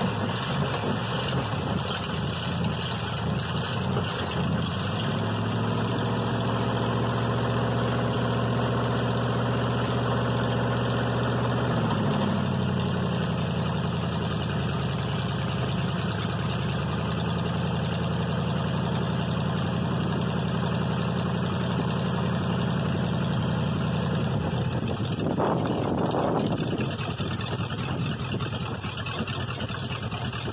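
Cold-started 454 big-block Chevy V8 with a Holley carburetor and no choke, idling. The idle steps up a little about five seconds in, then drops and settles lower about twelve seconds in, with a brief louder burst near the end.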